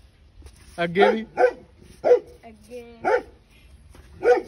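A dog barking, about five short barks spread irregularly.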